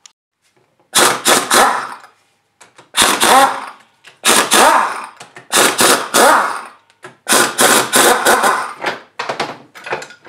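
Pneumatic impact wrench hammering in five bursts of about a second each, then a few short blips near the end, as it backs out the bolts while tearing down a TH400 transmission pump.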